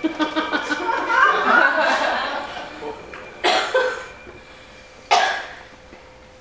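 Laughter: wavering chuckles for about three seconds, followed by two short, sharp vocal bursts near the middle and near the end.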